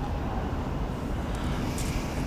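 Steady low rumble of background noise, with a couple of faint soft ticks near the end.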